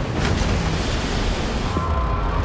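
Rough sea: waves crashing and water rushing, with wind, in a steady, dense wash of noise.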